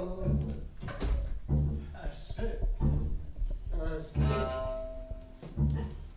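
Free-improvised string trio: the double bass plucks repeated low notes while the viola and cello play pitched lines above. In the second half, one bowed note is held for about a second.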